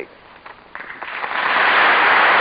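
Audience applause that starts just under a second in and swells quickly to full strength.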